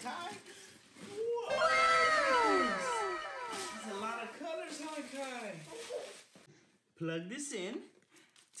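A cartoon 'wow' sound effect: several children's voices in a long, falling 'woooow'. It starts about a second in, is loudest just after, and trails off over the next few seconds.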